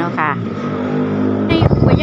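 A vehicle engine running at a steady drone. About a second and a half in, loud wind buffeting on the microphone sets in.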